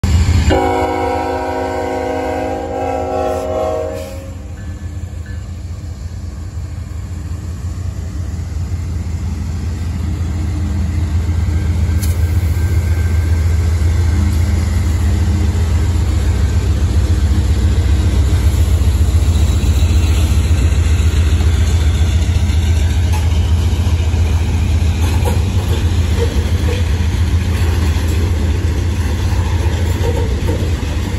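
A freight train's locomotive horn sounding a chord for about three and a half seconds, then diesel locomotives and a string of covered hopper cars rolling past at close range. The low rumble builds after the horn stops and stays loud.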